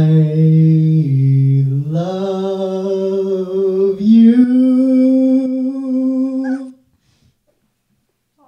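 A man singing a few long held notes with no words, dipping low and then climbing higher in steps, stopping suddenly about seven seconds in.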